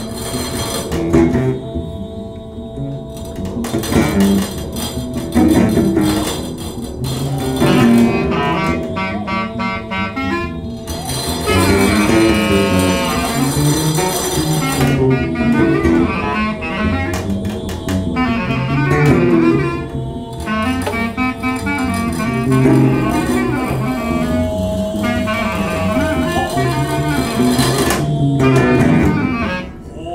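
Live acoustic jazz trio of clarinet, acoustic guitar and double bass, with long held clarinet notes over a moving bass line and guitar.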